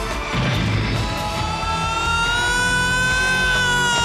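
Soundtrack music with a long, high cry that starts about half a second in and is held, rising slightly in pitch.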